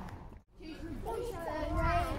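People's voices, mostly one high-pitched voice talking indistinctly, over a low background rumble. The sound cuts out briefly about half a second in at an edit, then the voice comes in.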